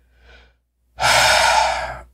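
A man's loud, breathy sigh into a close microphone, beginning about halfway through and lasting about a second, after a faint breath.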